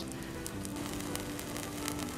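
Burning methane gas hydrate giving off faint, scattered crackles as the gas escapes while it decomposes to ice plus gas. A steady low background tone is heard throughout.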